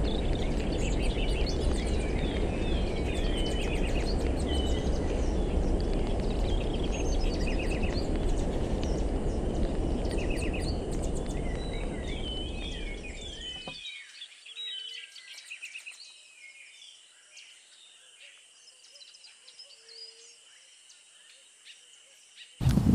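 Several small birds chirping and twittering in quick high calls over a loud, steady low rumble. The rumble cuts off abruptly about two-thirds of the way through, and fainter calls continue.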